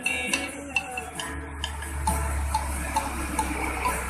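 Acoustic guitar being strummed in an instrumental stretch without singing, with scattered short plucked notes. A low rumble comes in after about a second.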